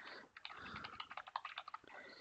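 Computer keyboard being typed on in a quick run of faint keystrokes. The typing starts about half a second in.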